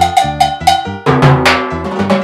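Timbale cowbell struck with a wooden stick in quick, even strokes, each ringing with a clear bright tone. About a second in, deeper ringing drum strokes join under the cowbell.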